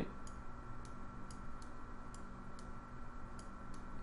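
Computer mouse button clicking about ten times at an irregular pace, over a faint steady hum.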